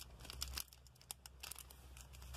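Plastic packaging bags crinkling in several short rustles as a hand handles small bagged products, over a faint steady low hum.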